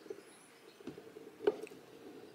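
Faint scuffing and handling noises from a person climbing in through the broken window of a derelict cabin, with one sharp knock about one and a half seconds in.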